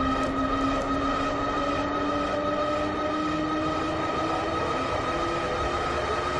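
A steady, loud droning hum made of several held tones over a low rumble, the lower tone slowly rising in pitch.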